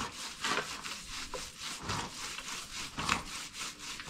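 Motorcycle wheel being scrubbed by hand, a run of uneven rubbing strokes about two a second.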